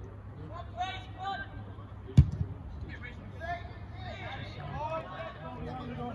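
A football kicked once, a single sharp thud about two seconds in, with players' shouts and chatter around it.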